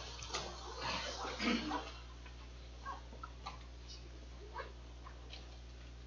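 A congregation getting to its feet: shuffling and rustling of people and seats for about two seconds, then a quiet room with a steady low hum and a few faint clicks.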